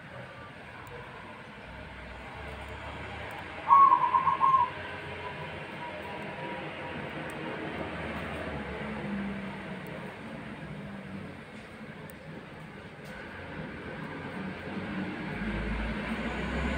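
Zebra dove (perkutut) cooing: one short burst of quick trilled notes about four seconds in, over steady background noise. A low rumble builds near the end.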